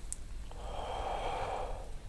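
A man's slow, audible breath out lasting about a second and a half, starting about half a second in: a deliberate exhale in a breathing exercise.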